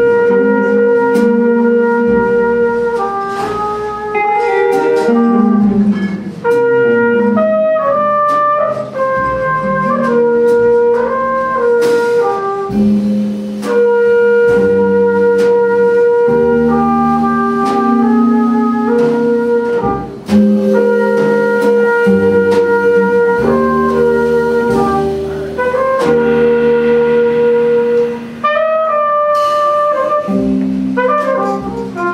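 Live jazz quartet: a trumpet playing a melody of long held notes over hollow-body electric guitar, upright bass and drums with cymbals.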